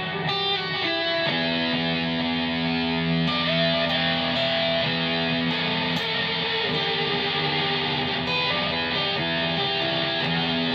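Electric guitar played through a Zoom G2.1U multi-effects pedal on a distorted patch with delay added. Held notes ring and overlap, changing about once a second at a steady level.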